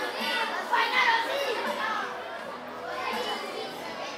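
Crowd of schoolchildren chattering, many voices overlapping, louder for a moment about a second in.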